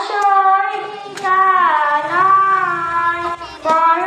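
A young girl singing a Bengali Islamic gazal into a microphone, a single child's voice in long, held notes that glide up and down between short breaths.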